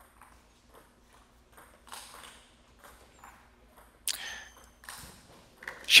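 Table tennis ball clicking off the rubber paddles and the table during a rally: light, sparse ticks, with one sharper, louder hit about four seconds in.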